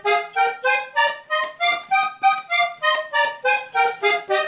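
Diatonic button accordion playing a scale in sixths on the treble buttons: about sixteen short detached notes, around four a second, two notes sounding together each time, climbing for the first half and then coming back down.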